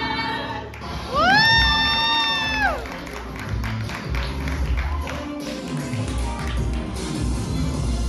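Live ensemble singers end a held chord under a second in. A loud whooping cry then rises, holds for about a second and a half and falls away, followed by audience clapping and cheering over a low musical beat.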